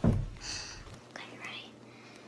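A sudden low thump at the very start, then a child whispering softly.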